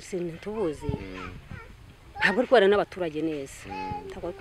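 Speech: a woman talking.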